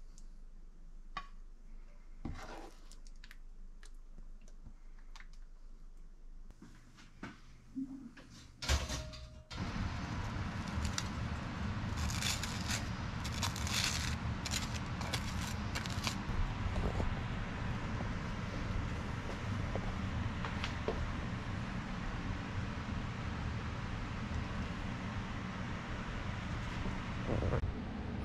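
Faint clinks of a serving spoon against a glass dish, then a louder steady background hum. Over the hum, a table knife scrapes butter across toast in a run of scratchy strokes.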